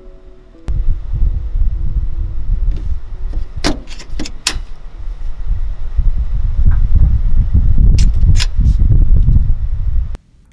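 Metal clicks and snaps of a fire extinguisher's quick-release mount clamps being worked on a Jeep roll bar: three sharp clicks a little under four seconds in, two more about eight seconds in. A loud, uneven low rumble runs under them from about a second in.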